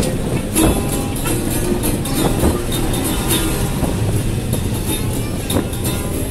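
Acoustic guitar strumming over the steady engine and road noise of a moving bus.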